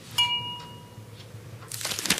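A single bright, bell-like ding just after the start, ringing out and fading within about a second. Near the end a swish builds up.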